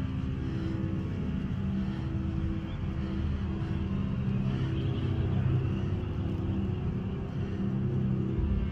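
Low, dark film-score music, held notes shifting slowly over a deep rumbling undertone.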